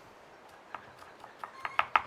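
Kitchen knife chopping onion on a wooden cutting board. A couple of separate knocks come first, then from about halfway in a fast, even run of knocks at about six a second.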